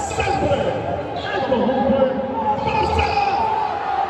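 Stadium crowd chatter: many voices talking at once in the stands of a packed football stadium.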